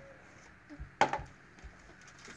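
A single sharp knock on a wooden tabletop about a second in, as the cardboard jelly bean game box is handled on the table; otherwise faint handling noise.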